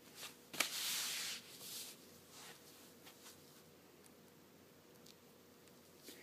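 Hands handling a knitted shawl and blocking pins: a few light ticks and a brief rustle in the first two seconds, a few faint rustles after, then near silence.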